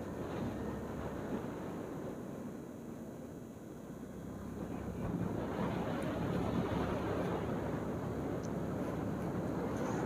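Suzuki scooter's engine running at riding speed, mixed with tyre and wind noise. It eases a little about three seconds in and grows louder from about five seconds.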